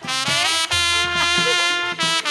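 Gambang kromong ensemble music: a sustained melody line that slides in pitch, played over a held bass note and low drum hits.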